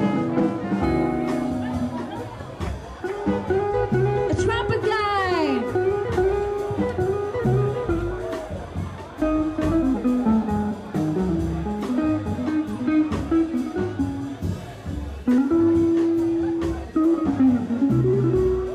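Live jazz band playing, with a guitar taking the lead line in bent, sliding notes over double bass and drums.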